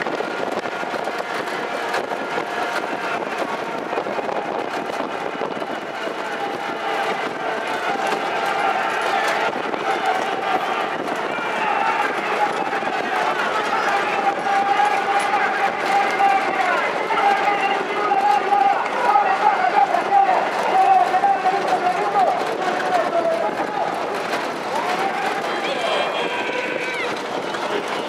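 People's voices calling out during a harness race, with long drawn-out shouts that grow louder through the middle and ease off near the end.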